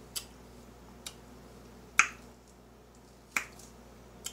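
Grapefruit being eaten: four sharp, isolated clicks over a quiet background, the loudest about halfway through, from chewing and handling the wet fruit segments.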